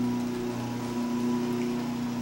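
A steady low hum with several evenly spaced overtones, holding level throughout.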